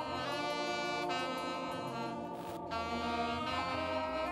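Saxophone playing a melody of long held notes, changing pitch a few times, over a band accompaniment with a steady bass line underneath.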